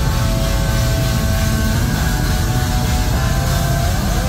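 A slam deathcore band playing live at full volume: distorted guitars holding sustained notes over a dense, muddy low-end rumble of bass and drums, the held notes changing pitch about three seconds in.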